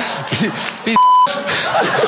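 A single censor bleep: one short, steady, pure beep about a second in, lasting about a third of a second, with the speech blanked out under it to cover a swear word. Speech runs before and after it.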